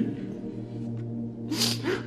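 Soft background music of steady sustained tones in a pause between spoken lines. Near the end comes a short, sharp intake of breath just before the voice resumes.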